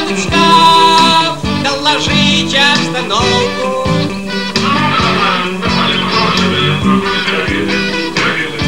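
Rock music playing loudly: an instrumental stretch with guitar over a steady bass and rhythm.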